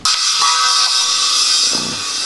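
Small cymbal on a children's toy drum kit struck hard with a drumstick, then left ringing with a bright shimmer that slowly fades.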